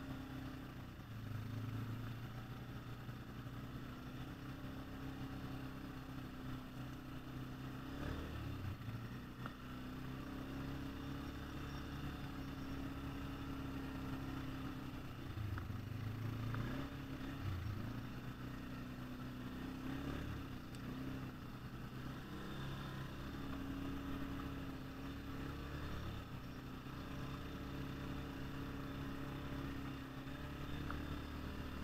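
ATV engine running, its pitch dipping and rising a few times as the throttle changes while riding.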